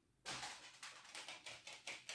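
Faint clicks and scrapes of a fork cutting into cake on a disposable plate, about four a second, starting a quarter second in.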